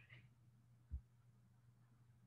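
Near silence: a faint steady low hum, with one brief low thump about a second in.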